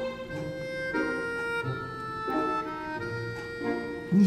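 Soft instrumental background music: sustained chords, each held for about a second before moving to the next.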